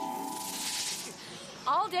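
A hissing, rattling shimmer sound effect that fades away over about the first second, with a faint steady tone beneath it. A woman's voice starts near the end.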